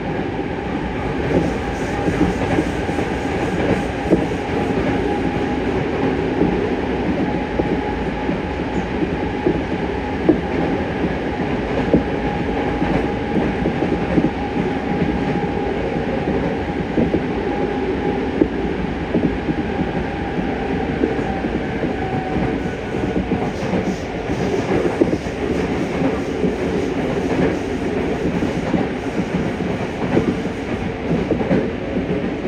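Yokohama Municipal Subway 3000A electric train running at speed through a tunnel: a steady, loud rumble of wheels on rail, with a thin whine from the Mitsubishi GTO-VVVF traction drive that sinks slightly and fades about two-thirds of the way in.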